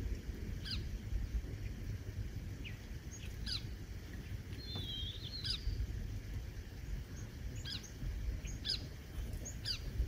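A flock of small songbirds, mostly bluebirds, giving short, scattered chirps and call notes, with a brief twittering run about halfway through. A steady low rumble sits underneath.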